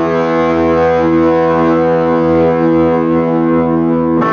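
Amplified electric guitar holding one steady, sustained chord that drones on through the amp without being re-struck.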